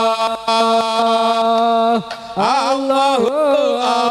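A man's voice chanting an Arabic Islamic devotional song (sholawat). He holds one long note for about two seconds, then moves into winding, ornamented phrases.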